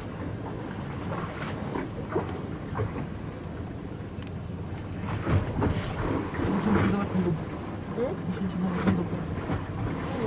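Steady low rumble and wash aboard a boat on choppy open sea, with faint voices in the background from about halfway through.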